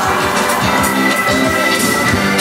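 Rock band playing live on stage: electric guitars, bass, keyboards and drum kit in an instrumental passage, with steady drum hits. A single high note is held from just under a second in.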